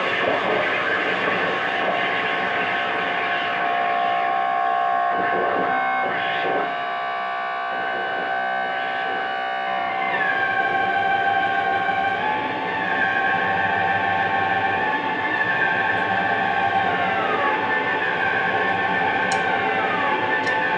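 Drum kit sounded for sustained tone rather than beats: several high ringing metallic tones hold steady over a rough noisy wash. Some slide down in pitch about halfway through and again near the end.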